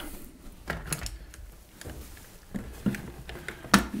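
Light knocks and rubbing of a wooden shelf bracket being handled and positioned against wooden benchwork framing, with a sharper wooden click shortly before the end.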